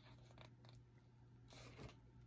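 Near silence: room tone with a few faint clicks and a soft rustle about one and a half seconds in.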